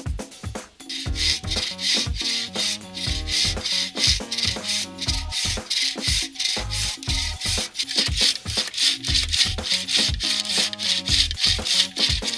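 Wooden bow saw cutting through a cherry log in steady back-and-forth strokes, starting about a second in, over background music with a steady beat.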